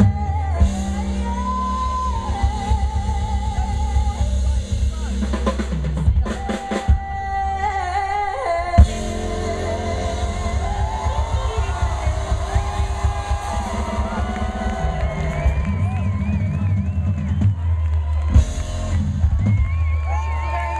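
Live band playing a slow ballad: a woman singing with vibrato over drum kit, electric guitar, bass and keyboard. A single sharp drum hit stands out about nine seconds in.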